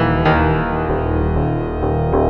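Yamaha DX7IID FM synthesizer patch played dry in mono, without effects: notes struck at the start and again about a quarter second in, then held and slowly fading.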